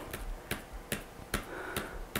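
A run of small, sharp ticking clicks, about two to three a second, over the low hum of a quiet room.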